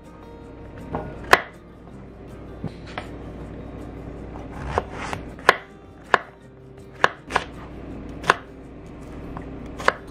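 Kitchen knife chopping vegetables (zucchini, mushrooms and bell pepper) on a cutting board: about a dozen sharp, irregularly spaced knocks of the blade on the board.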